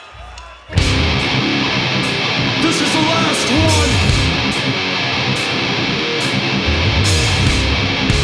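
Death metal band playing live: distorted electric guitars and drums come in together and at full volume less than a second in, after a brief quiet low hum.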